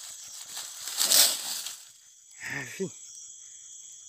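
Dry leaf litter and twigs rustle and crackle for about a second as a young southern tamandua is handled on the forest floor, loudest just over a second in. Steady insect chirping continues behind.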